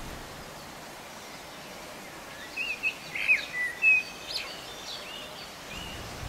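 Songbirds calling in a quick run of short, sliding chirps about halfway through, over a faint, steady open-air background hiss.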